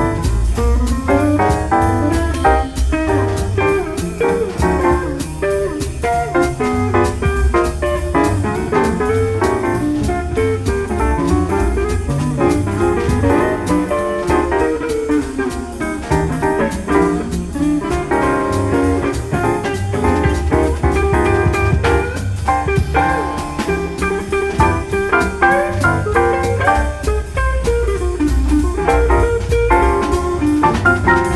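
Live jazz quartet playing at a steady tempo: a hollow-body electric archtop guitar carries single-note lines over bass, piano and drums with cymbal strokes.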